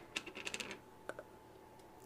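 A quick cluster of light clicks and taps, then two faint ones a second in. This is an underglaze bottle and small plastic cups being handled and set down on a work table.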